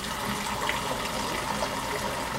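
Water running steadily from a kitchen tap, a continuous even rush.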